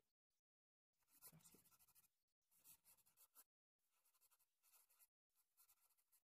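Near silence, broken by faint scratchy noise in about four short spells.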